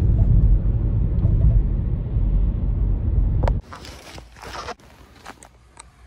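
Low road and engine rumble inside a moving car, cutting off abruptly about three and a half seconds in. After that come quieter rustles and light knocks of a phone being handled against clothing.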